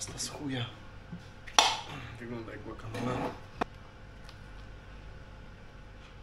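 Cutlery and plates clinking and knocking on a table as food is handled, with one sharp, loud clack about a second and a half in and another short knock a couple of seconds later. A man's low voice sounds briefly between the knocks.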